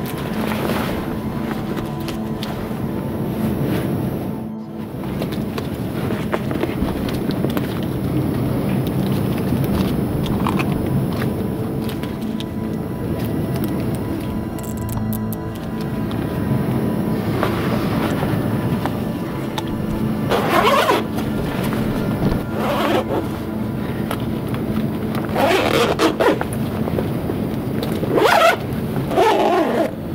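Background music, with a zipper drawn along in about four strokes through the second half: a body bag being zipped shut.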